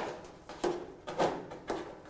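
Metal mesh grease filter of a Smeg canopy rangehood being slid back into its frame: a few short scrapes of metal on metal.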